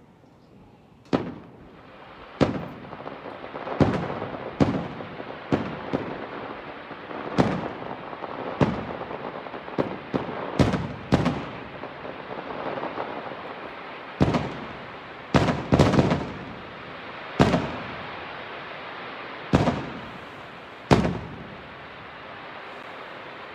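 Aerial firework shells bursting overhead in a rapid series of sharp booms, about one a second with some in quick pairs, each trailing a short echo. A steady crackling hiss from the display fills the gaps between reports.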